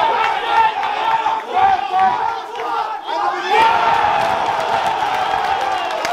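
Crowd of spectators shouting and yelling over one another around a fight, the noise dipping a moment then swelling again about three and a half seconds in.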